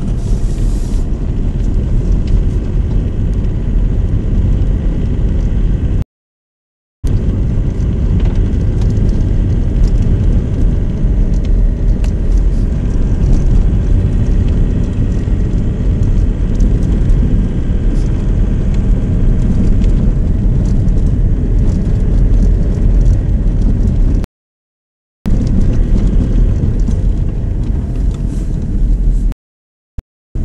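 Car driving on a snow-packed road, heard from inside the cabin: a steady low rumble of engine and tyres. It drops out to dead silence three times, for about a second each, near the start, near the end and at the very end.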